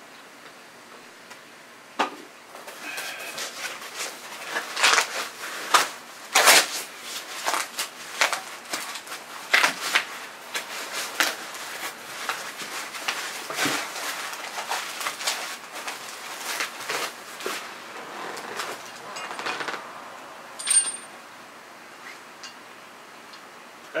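Packing paper rustling and a cardboard shipping box being handled while a shovel kit is unpacked, full of irregular crinkles, clicks and knocks. It starts about two seconds in, dies down near the end, and a single short high ping sounds near the end.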